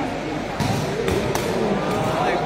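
Sepak takraw ball being kicked during a rally: three sharp knocks, one about half a second in and two close together just past the middle, over the chatter of a crowd.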